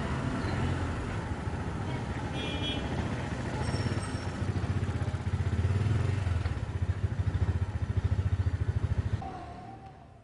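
Small engine of a CNG auto-rickshaw running with a rapid low throb as the three-wheeler approaches. It grows louder over the first nine seconds and then fades out near the end.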